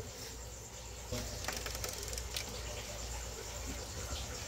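Snake vibrating its tail rapidly against the glass of its enclosure: a faint, fast, dry rattling buzz that starts about a second in and lasts nearly three seconds. It is a defensive display that mimics a rattlesnake's rattle.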